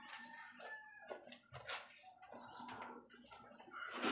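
Faint wet squelching and sloshing of clothes being scrubbed and lifted by hand in a basin of soapy water, in short strokes about every half second to a second. A brief high whine sounds about a second in.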